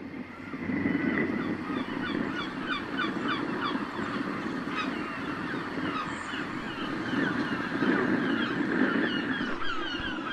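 Seaside ambience fading in: many gulls giving short cries in quick succession over a steady low rushing background.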